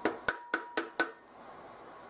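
Clear plastic food processor bowl being knocked to shake grated cotija cheese out onto a plate: about five quick, sharp knocks in the first second, then quiet handling.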